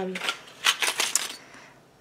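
A quick cluster of light clicks and rattles about half a second to a second in, as a blister-packed card of metal hooks and eyes is picked up and handled.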